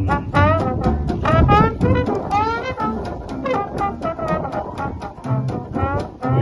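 Small acoustic jazz band playing an instrumental passage: trombone and clarinet carrying a wavering, sliding melody over a banjo strumming a steady beat and a double bass line.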